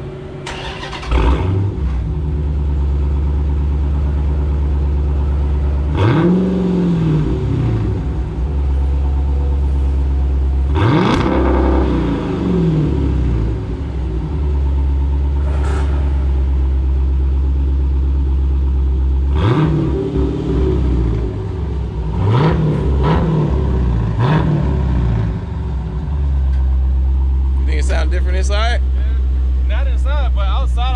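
Dodge Challenger Scat Pack's 392 HEMI V8 with its muffler deleted, starting about a second in, then idling loudly and being revved in short blips several times.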